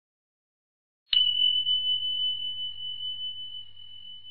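A single high bell ding struck about a second in, ringing on one tone and slowly fading: the quiz's time-up signal as the answer timer runs out.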